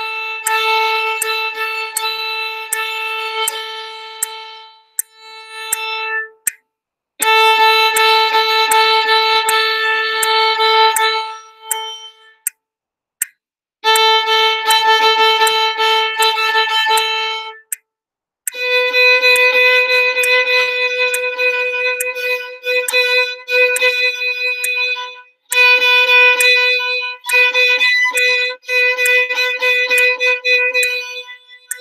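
Violin bowing a rhythm exercise on a single repeated note, A, in phrases of quarter, half, eighth and sixteenth notes with short breaks between lines. About 18 seconds in it moves up to B for a second part in six-eight time. A metronome ticks evenly throughout.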